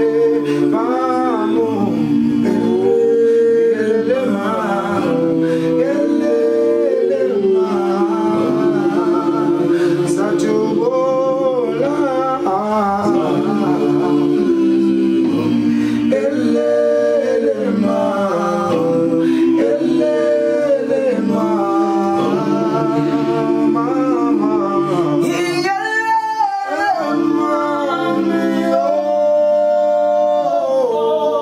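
A group of men singing a gwijo, a Zulu a cappella chant song, in several voices: a lead line moves over a steady held note from the others. Near the end a loud, high swooping call rises over the group.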